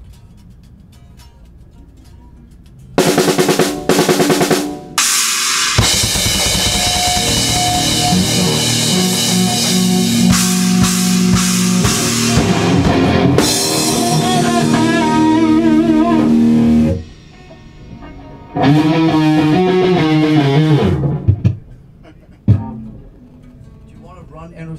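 Heavy metal band playing loud in rehearsal: drum kit, electric bass and distorted electric guitars. A short loud burst about three seconds in, then the full band plays for about eleven seconds with wavering guitar bends near the end, stops, plays again for about two seconds, and a single hit follows.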